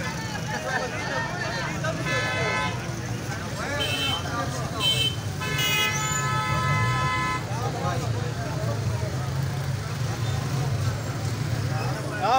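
Vehicle horns honking in a busy street: a short honk about two seconds in, two quick toots around four to five seconds, then a long honk of nearly two seconds, over a steady low engine and traffic rumble and crowd chatter.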